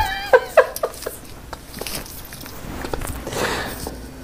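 A man's high, wavering whine of disgust, trailing into a few short vocal bursts in the first second, then a soft breathy hiss about three seconds in.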